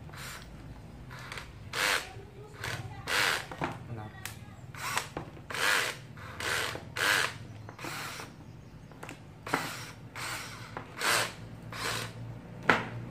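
Makita DF331D 10.8 V cordless drill driver running in about a dozen short trigger bursts while a bit is fitted into its keyless chuck, the chuck spinning briefly each time.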